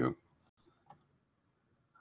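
A single faint computer mouse click about a second in, against quiet room tone, just after a spoken word ends.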